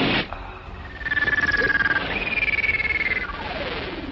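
Synthesized magic-power sound effect from an old martial-arts film: a pulsing electronic whine that slides slowly down, jumps higher about two seconds in, then drops away in a falling sweep near the end. A loud blast dies out at the very start.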